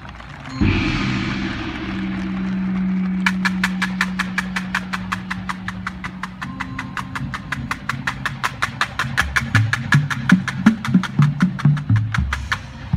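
High school marching band: a held low brass chord comes in with a cymbal crash about half a second in. From about three seconds in, the drumline plays an even run of sharp clicks, about four or five a second, over the held chord, and low bass-drum notes join near the end.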